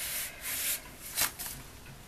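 Plastic sheets of a Midori zipper pouch rubbing and rustling under the fingers, with a short louder rub a little over a second in.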